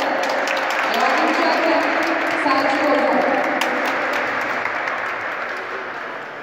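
Spectators applauding, with voices mixed in; the clapping dies down near the end.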